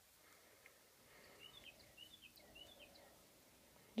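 Near silence: room tone, with a run of about six faint, quick bird chirps in the middle.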